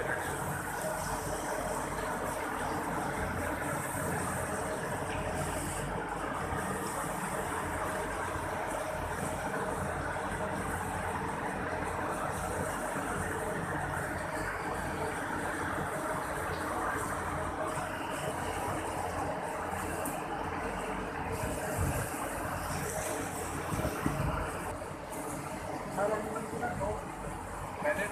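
Steady running noise of a cow shed's cooling system: electric fans humming with a faint steady tone while water sprinklers spray over the stalls. A few knocks near the end.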